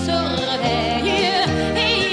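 A recorded song with a woman singing a melody with strong vibrato over orchestral backing and a bass line.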